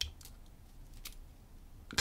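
A few faint, scattered clicks of a steel lock pick moving against the pins inside a brass pin-tumbler lock held under tension while it is being single-pin picked.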